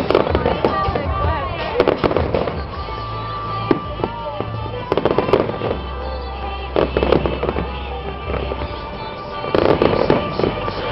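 Aerial fireworks shells bursting, in clusters of bangs and crackles every one to two seconds, with the loudest groups near the start, about 5 and 7 seconds in, and near the end. Music with held notes and a deep bass plays along underneath.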